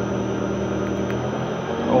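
The Harrison 11-inch lathe's three-phase motor, fed by a variable-frequency inverter set to 40 Hz, running with a steady hum.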